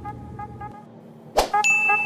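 A like-button sound effect over electronic background music: a short whoosh about one and a half seconds in, then a bright, held ding. The music's bass drops out just before.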